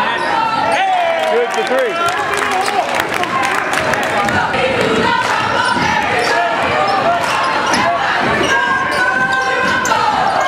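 Basketball game sounds in a gymnasium: a ball bouncing on the hardwood court, with shouting voices from the bench and crowd.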